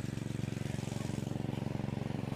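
A tractor's diesel engine running steadily at a constant speed, an even, unchanging engine note.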